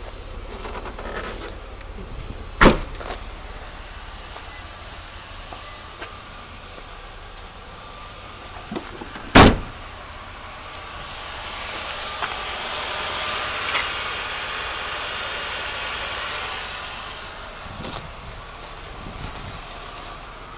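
Two loud slams about seven seconds apart, typical of a van's rear hatch and a door being shut, then a swell of vehicle noise that rises and fades over about five seconds.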